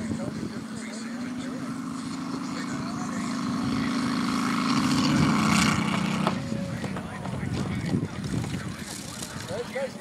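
Radial engine of a radio-controlled F6F Hellcat scale model running steadily and growing louder as the model rolls along the runway, then stopping abruptly with a short crack about six seconds in as the model runs off into the grass and noses over.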